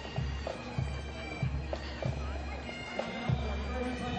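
Bagpipes playing, their steady held drone tones running throughout, over a low uneven rumble.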